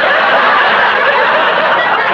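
Studio audience laughing steadily at a punchline, many voices blended into one continuous wash of laughter.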